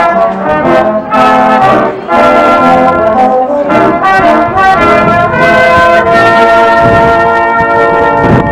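Small brass band of trumpets, trombones and tubas playing a tune together in harmony, the chords changing every half second or so.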